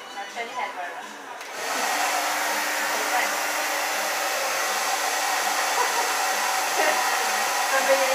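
Handheld hair dryer switching on about a second and a half in, then blowing steadily as hair is blow-dried over a round brush.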